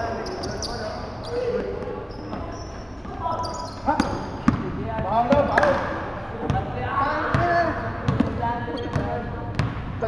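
Basketball bouncing on a wooden gym floor: sharp thuds at irregular intervals, the loudest about four and a half seconds in, with players' voices calling out.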